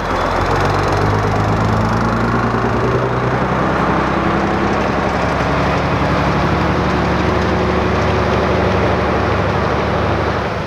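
Heavy truck's diesel engine running as the truck pulls away, steady, with its pitch rising slightly a few seconds in as it picks up speed.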